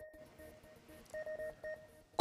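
The closing notes of a TV news theme: a few faint, short electronic beeping tones on two fixed pitches, coming in brief groups between about one and two seconds in.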